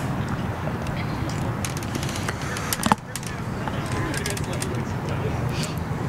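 Open-air soccer field ambience: a steady low rumble, with faint distant players' voices and one short sharp knock just under three seconds in.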